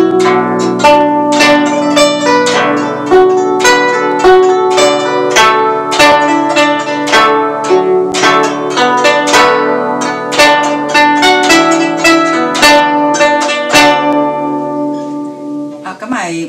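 Guzheng played solo: a simple beginner's tune plucked in the upper strings over two-note octave pinches (small pinch, xiao cuo) in the bass, each note ringing and decaying. The playing thins out about two seconds before the end and the last notes ring away.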